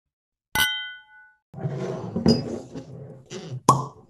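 A single sharp clink that rings on for about a second. From about a second and a half in, a rough, noisy rumble follows, with a harder hit near the end. Together they sound like a produced intro sound effect.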